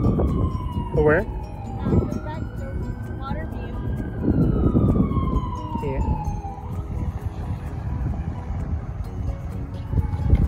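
An emergency vehicle's siren wailing, its pitch slowly falling, rising and falling again, over a low background rumble with a few brief voices.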